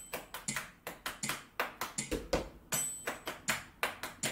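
Hands slapping the thighs in a steady, quick rhythm of about four to five slaps a second: a body-percussion pattern played at performance tempo.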